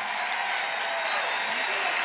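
Audience applauding steadily, a dense even clatter of many hands, with no speech over it.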